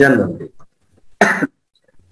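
A man's spoken word trailing off, then a pause and a single short cough a little past a second in.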